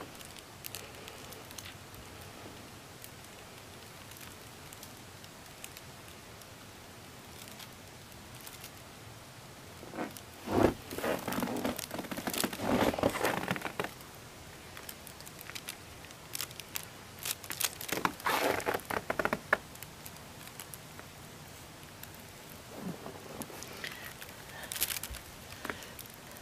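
A thin balloon envelope crinkling and rustling as it is handled. The sound comes in two main bouts of a few seconds each, about ten and eighteen seconds in, with a shorter one near the end, over a low steady hiss.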